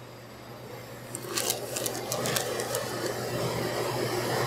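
Crinkling of a plastic zip bag and a plastic measuring cup scooping shredded mozzarella and tipping it onto chicken patties, with scattered sharp crackles building from about a second in, over a steady low hum of kitchen equipment.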